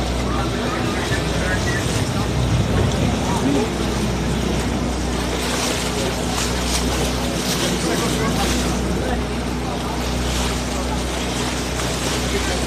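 A boat's engine running with a steady low hum, under the rush of water wash and wind, with indistinct voices in the background.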